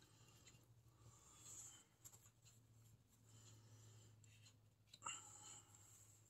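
Near silence: room tone with a few faint, brief rustles of hands and art materials on the desk, the clearest one about five seconds in.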